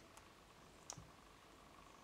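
Near silence: room tone, with one faint click about a second in as a rubber loom band is stretched over the fingers.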